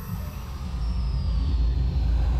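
Cinematic warp-speed sound effect: a deep rumble building in loudness, with a high tone gliding downward about a second in.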